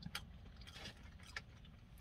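Near quiet: a low steady rumble with a few faint, brief clicks.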